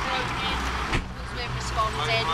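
Steady low hum of a vehicle engine idling, under indistinct voices, with a sudden break about a second in.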